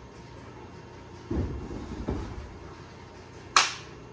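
A dull, heavy thud about a second in as the cast-iron central section of a ringing machine is set down on a table, with a smaller knock after it. Near the end a single sharp hand slap, a high five.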